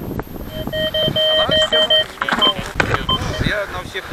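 Fortuna Pro2 metal detector giving a mid-pitched target tone that breaks into a fast string of beeps for about a second and a half as the search coil passes over the ground, then two short blips, over scattered scraping clicks.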